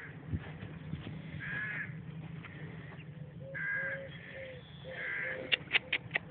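A bird calling three times, about two seconds apart, with a few sharp clicks near the end.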